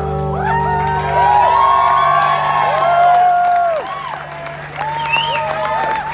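Club audience cheering and whooping at the end of a live rock song, while the band's last low notes ring on from the amplifiers underneath.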